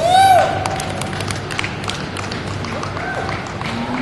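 Show-ring ambience: a brief high pitched call right at the start, then scattered light taps and knocks. A lower, slightly rising call begins near the end.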